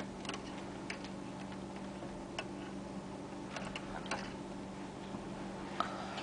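Faint, scattered ticks and light rustles of waxed thread being handled and drawn through burlap webbing while tying a spring-lashing knot, over a steady low hum.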